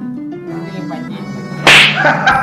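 Background music with a slow stepping melody, then near the end one loud, sharp slap-like crack as a hand strikes a man's head.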